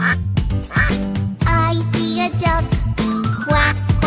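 Children's song music with a steady beat and quacking, "quack, quack, quack", over it.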